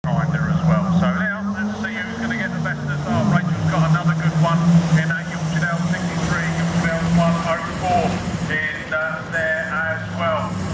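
Several junior saloon autograss cars running together round a dirt oval, a steady engine drone whose pitch rises and falls about two to three seconds in and eases off near the end, with people talking over it.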